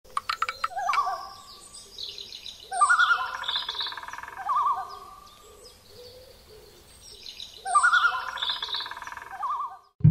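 Birds calling: two long wavering, trilling calls about five seconds apart, with higher chirps above them and a few sharp clicks in the first second.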